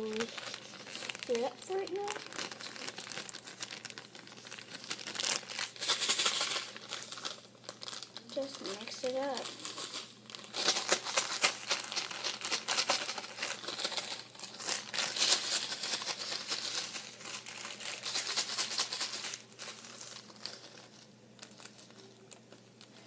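Clear plastic zip-top bag crinkling as it is handled and shaken with a dry mix inside, in uneven bursts; the crinkling dies down about two and a half seconds before the end.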